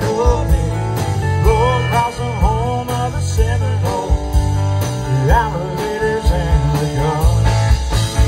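Live country band with guitars, fiddle, pedal steel, bass and drums playing an instrumental passage between sung verses. A lead line bends and slides in pitch over a steady bass and drum beat.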